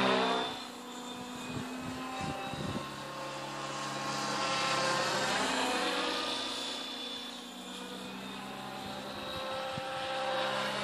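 Align T-Rex 600E Pro electric RC helicopter in flight, its rotors and motor giving a steady whine whose pitch and loudness sweep up and down as it passes. It is loudest at the start, fades, then swells again about halfway.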